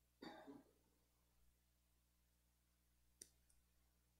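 Near silence: church room tone, with a faint short noise near the start and a single faint click about three seconds in.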